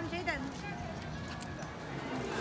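Indistinct chatter of passing people, with a raised voice right at the start.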